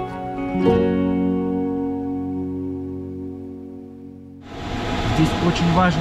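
Background music on a plucked string instrument, a final chord ringing and slowly fading. About four and a half seconds in it cuts abruptly to a steady rush of airflow noise inside a glider cockpit, with a man's voice.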